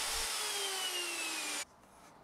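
Handheld plunge router running, its motor whine falling steadily in pitch, then cut off abruptly near the end.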